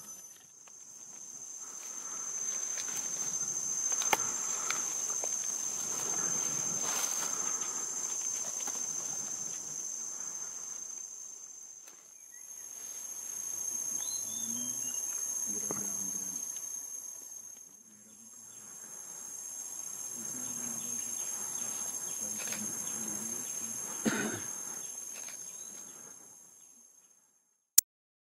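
Steady high-pitched chorus of insects in natural ambience. It comes in three stretches that each fade in and out. There is a short sharp click near the end.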